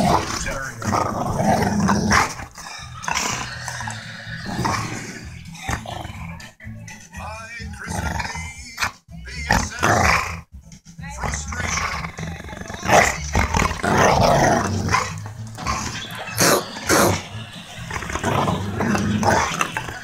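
A Labrador–pit bull mix dog growling with a bone held in his mouth while guarding it from a hand trying to take it in play.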